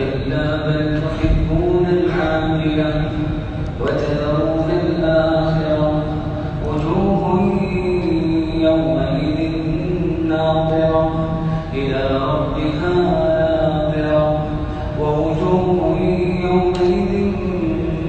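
A man reciting the Quran in the melodic, chanted tajweed style, drawing out long sustained notes that bend slowly in pitch. The phrases last a few seconds each, with short breaks between them.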